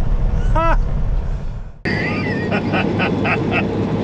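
A man laughing in a moving semi-truck cab over the steady drone of the engine and road: first a short laugh, then, after an abrupt cut less than two seconds in, a run of about four rhythmic ha-ha-ha bursts.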